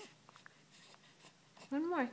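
A young baby's short vocal sound near the end, after a few soft mouth clicks as he sucks on his fists.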